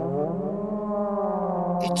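A cartoon moon whale's call: one long, low note that rises a little at first and then holds steady.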